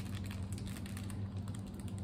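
Light, irregular clicking and crinkling of a plastic bait package being handled as a Ned jig head is pulled out of it, over a steady low hum.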